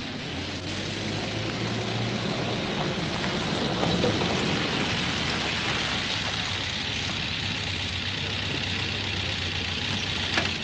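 Land Rover engine running as the vehicle drives up close, the sound growing louder over the first few seconds and then holding steady, with a constant hiss from the old film soundtrack.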